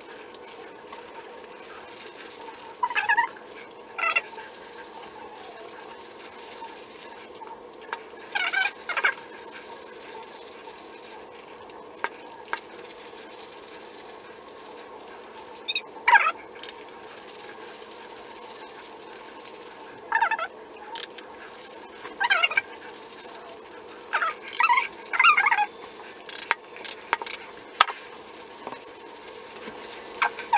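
A dog barking and yipping from another room in short high calls, singly or in quick clusters every few seconds, over a steady low hum.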